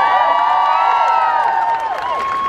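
A crowd cheering and whooping: many voices hold high 'woo' calls together and die away near the end.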